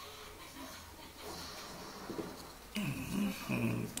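Faint handling of a plastic camera battery grip on a table, then, in the last second or so, a man's throaty grunt running into a cough.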